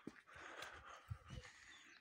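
Near silence: faint outdoor background with a few soft, low knocks a little after the middle.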